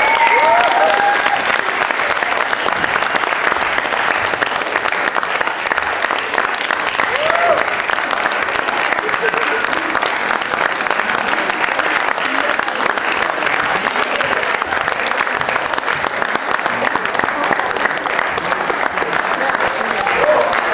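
Theatre audience applauding steadily, with a few voices calling out over the clapping near the start and again about seven seconds in.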